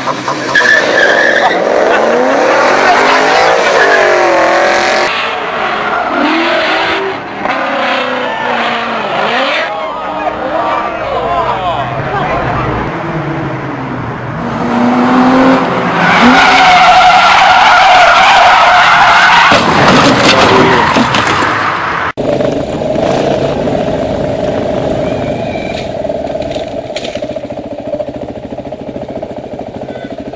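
Car engines revving and tyres squealing as cars race and drift, over several short clips in a row. The loudest stretch is a steady squeal a little past halfway, and the sound cuts abruptly about two-thirds of the way in.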